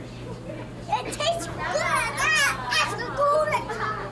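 A toddler vocalizing without words: a run of high-pitched babbling sounds rising and falling, starting about a second in and stopping just before the end, over a steady low hum.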